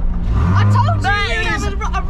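Mazda MX-5's engine running with a steady low hum inside the cabin, with a man's voice laughing over it from about half a second in.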